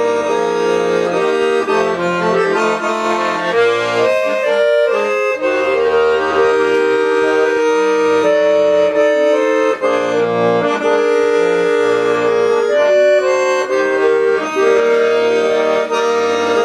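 Piano accordion playing a tune: a melody on the right-hand keys over held chords and bass notes, with the notes changing every second or so at a steady level.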